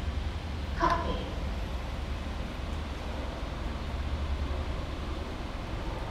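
Steady low background rumble, with a brief voice sound about a second in.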